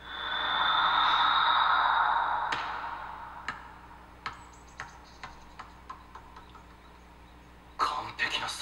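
Soundtrack of an anime volleyball episode: a swelling rush of sound that fades over about three seconds, then a run of sharp light taps, coming faster at first and then about two or three a second.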